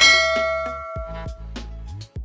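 A bell 'ding' sound effect: one bright strike that rings and fades over about a second, over background music with a steady bass line.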